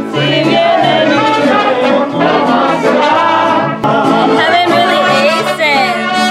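Mariachi band playing: trumpets carry the melody over a stepping bass line, with a voice singing.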